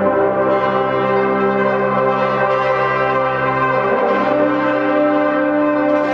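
Brass ensemble of cornets, tuba, euphonium and trombones playing sustained chords, with a change of chord about four seconds in.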